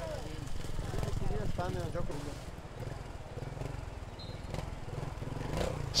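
Trials motorcycle engine running as the bike climbs a section, with faint voices in the background.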